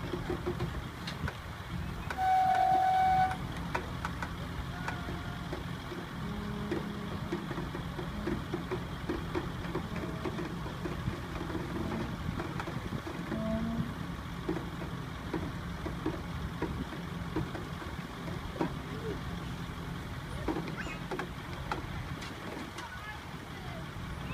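A heavy truck's diesel engine runs steadily as a recovery crane slowly winches an overturned tipper truck upright. A horn sounds once, loud and steady, for about a second, a couple of seconds in.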